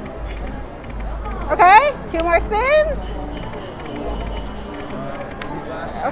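Video slot machine spinning and settling its reels over casino-floor chatter, with the slot's electronic music and a short burst of wordless voices exclaiming about a second and a half in.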